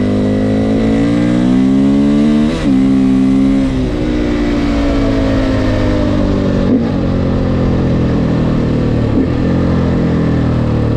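KTM 450 EXC's single-cylinder four-stroke engine under way: the revs climb, break sharply in a quick upshift about two and a half seconds in, then the note falls slowly as the throttle eases, with two brief blips later on.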